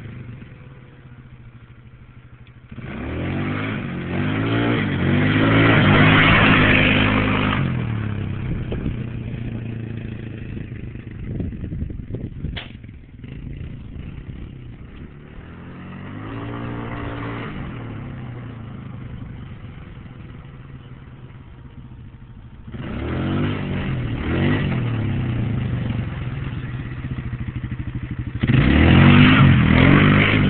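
Polaris Scrambler ATV engine revving hard under acceleration in three loud runs. Between them it goes quieter, with one stretch where the pitch rises and falls as it passes. A single sharp click comes about twelve seconds in.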